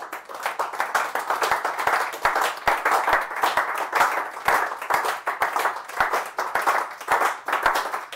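Audience applauding: many hands clapping in a dense, steady patter that starts suddenly.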